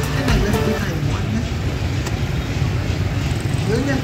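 Street traffic, mostly motorbikes, making a steady low rumble, with voices mixed in.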